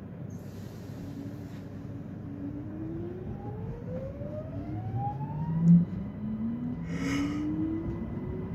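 Electric train's traction motors whining in rising pitch as it pulls away from a stop and gathers speed, heard inside the passenger car over the rumble of the running gear. A single loud knock comes a little before six seconds in, and a brief hiss about a second later.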